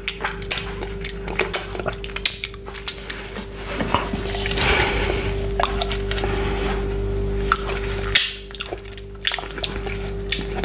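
Close-up wet mouth clicks and finger-licking sounds. From about four seconds in, fingers rummage and scrape through chopped frozen pineapple in a plastic measuring jug, a denser rustling that stops abruptly near the end. A steady faint hum runs underneath.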